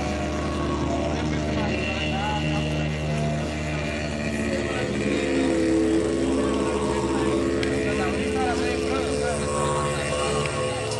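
Didgeridoo playing a steady low drone with layered looped parts, with short rising and falling pitch sweeps above the drone.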